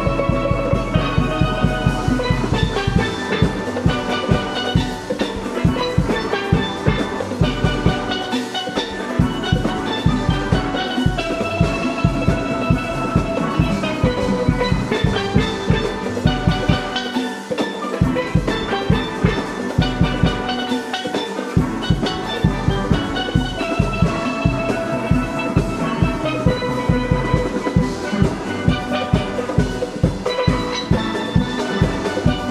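A steel orchestra playing live: steel pans ring out melody and chords over a steady beat from drum kit and congas. The bass drops out briefly a couple of times midway.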